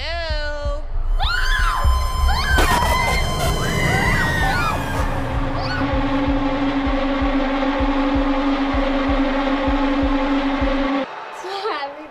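A woman calls out "Hello?!", then women scream. Tense trailer music follows: a held low note over repeated low thuds, cutting off suddenly about eleven seconds in.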